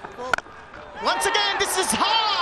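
A cricket bat strikes the ball once with a sharp crack, the loudest moment, about a third of a second in. About a second later several voices rise in a shout as the ball is hit high for a big shot.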